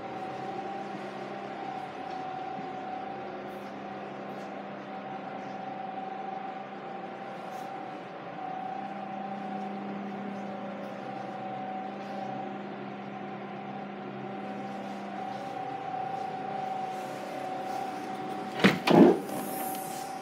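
A steady hum with a faint tone in it, then near the end two loud, sharp clunks close together as the car's tailgate is opened.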